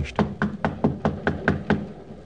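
Rapid knocking on a train compartment door, about nine quick, evenly spaced knocks at roughly five a second: a radio-drama sound effect of a pursuer at the door.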